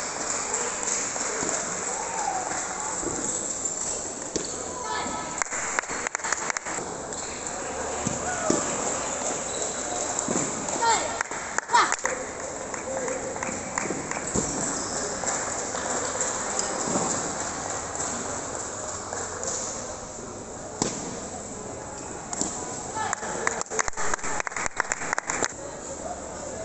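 Table tennis ball clicking off bats and the table in short rallies, heard as runs of sharp ticks, the last near the end, over a steady background of voices chattering in a large hall.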